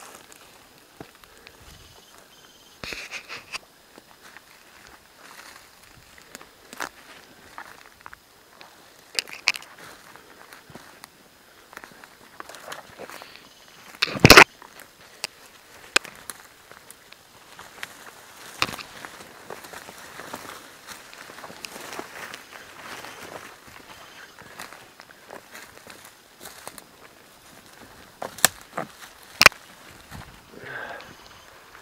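Footsteps pushing through dense forest undergrowth, with leaves rustling and twigs snapping at irregular intervals; the loudest snap comes about halfway through, and two more sharp cracks come near the end.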